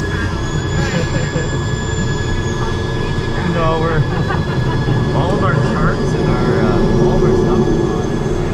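Twin Pratt & Whitney turboprop engines of a Cessna Conquest I running steadily, heard from inside the cabin: a constant low drone with a thin high turbine whine over it.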